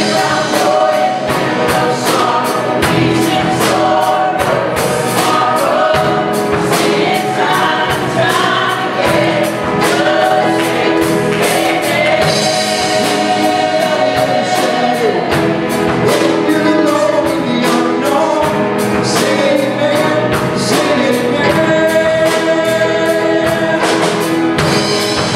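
Church choir and worship team singing a gospel song with a live band, drums keeping a steady beat under the voices.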